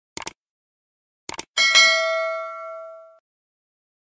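Subscribe-button animation sound effects: a quick pair of clicks, another pair of clicks just over a second later, then a bright notification-bell ding that rings out and fades over about a second and a half.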